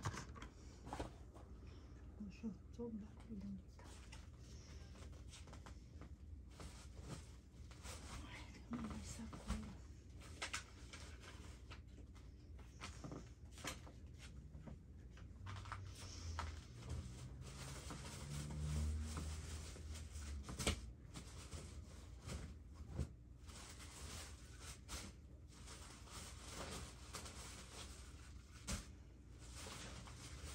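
Faint scattered clicks and knocks, with a faint voice murmuring now and then in the background.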